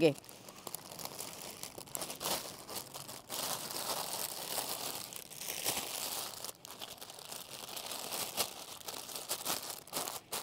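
Thin plastic bag crinkling and rustling continuously as it is handled, folded around a stack of flatbreads and pressed flat.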